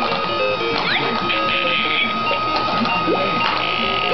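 Electric ball-popper toy running, its motor whirring while it plays an electronic tune in short stepped notes and blows plastic balls up out of its top.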